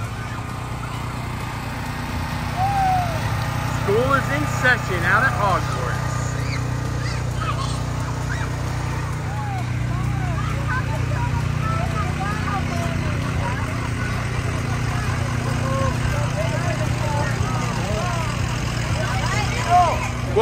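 Engines of slow-moving parade vehicles running with a steady low hum, while many spectators' voices call out and chatter over it.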